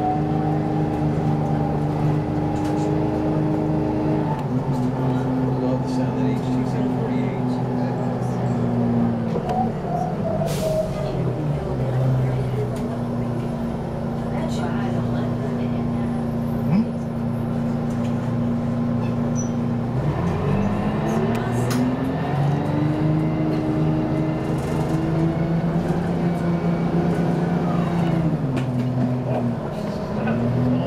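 Inside a 1991 Orion I transit bus under way: the Detroit Diesel 6V92 two-stroke V6 diesel drones steadily. Its pitch steps down about four seconds in and again around ten seconds in, as the Allison HT-748 automatic shifts up. It holds steady for a while, then dips and climbs again from about twenty seconds in as the bus pulls away once more and shifts.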